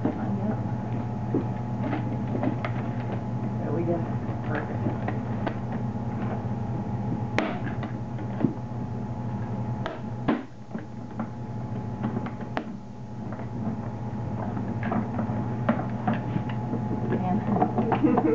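Steady electric hum of the simulated spacesuit backpack's air fans, with scattered clicks and knocks as the plastic air hoses and helmet fittings are handled and attached; the sharpest knocks come about seven and ten seconds in.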